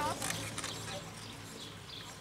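A voice from the passing cyclists breaks off at the very start. A few light clicks and rattles follow and fade within the first second, leaving faint outdoor sound over a steady low hum.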